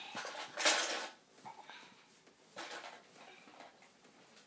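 A large plastic jug with cat food inside being knocked and dragged about by a toddler, giving a rattling clatter. The loudest burst is in the first second and a shorter one comes near three seconds.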